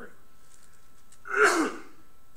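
A man clears his throat once, a short loud burst about a second and a half in.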